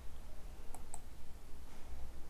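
Two quick, sharp clicks a fifth of a second apart, about three-quarters of a second in, over a steady low hum.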